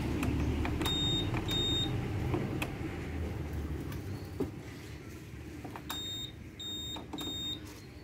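Honda PCX 160 smart-key system's buzzer giving short high beeps: two about a second in, then three more in quick succession near the end. They are confirmation beeps as the handlebar lock is set and the anti-theft alarm arms. A low rumble underneath fades away over the first few seconds.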